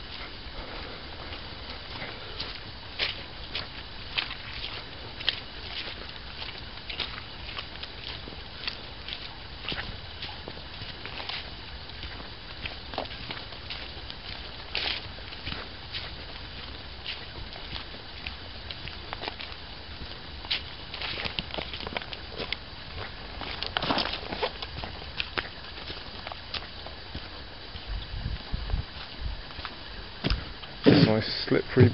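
Footsteps of a walker on a leaf-strewn woodland dirt path: irregular crunches and clicks over a steady low background hiss. Near the end come a few low thuds as the walker steps onto a wooden footbridge.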